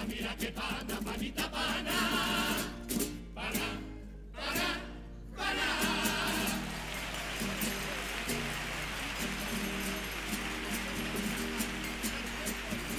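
Carnival coro of massed voices with strummed guitars and plucked strings, breaking off and then landing on a chord about five and a half seconds in. From there a steady clattering haze, likely audience applause, runs over softly held instrument notes.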